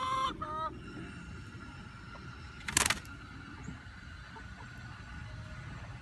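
A hen's drawn-out pitched call tails off just after the start, with a second short call about half a second in. About three seconds in comes a short, loud flutter, her wings flapping as she hops up onto a wooden bench.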